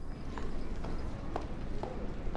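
A horse's hooves clip-clopping at a walk: about four soft, faint hoof strikes, roughly two a second, over a low hum.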